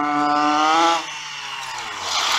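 HPI Baja 5B RC car's modified 30.5cc two-stroke gasoline engine running flat out without a tuned pipe: a loud, steady buzz that rises slightly, then cuts off about halfway through as the throttle is released. A quieter, rougher rushing sound follows while the car coasts toward the camera.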